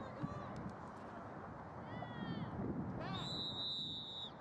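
Players and spectators shouting across the field, then a referee's whistle blown about three seconds in: one steady, high blast lasting about a second.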